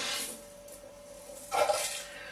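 Ceramic boil-enhancer beads dropped into the wash in a stainless steel air still: a brief splash and rattle at the start, then a second short noise about one and a half seconds in.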